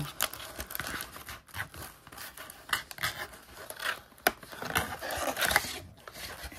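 Cardboard trading-card box being opened by hand: its paperboard flaps rustle, scrape and click irregularly as they are folded back, with one sharp click about four seconds in.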